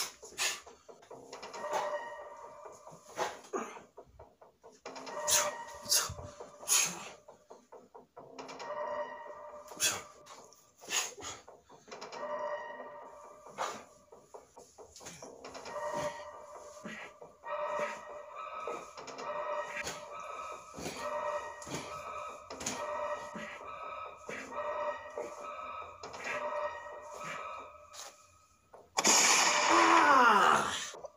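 Rapid gunshot sound effects in irregular bursts over a music track with steady held notes. Near the end comes a loud sound that falls in pitch.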